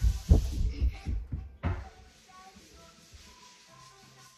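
A quick run of low thumps in the first two seconds, followed by faint music played through a television speaker.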